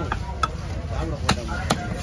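Knife chopping through fish: four sharp, unevenly spaced chops.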